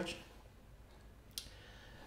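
A single computer mouse click a little past halfway, against faint room tone.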